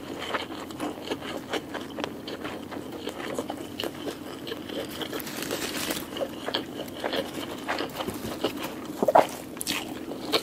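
Close-miked chewing with short wet mouth clicks, then crisp leaf lettuce being handled and crinkled right at the microphone, loudest about nine seconds in.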